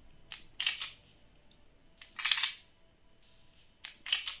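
Master Trigger shoulder buttons on a Black Shark 4 gaming phone being worked by hand: three sharp clicks, each followed by a short plastic-and-metal clicking rattle as the magnetic trigger is released or pushed back, repeating about every two seconds.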